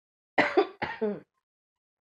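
A woman clearing her throat, a loud, short sound in two quick pushes near the start.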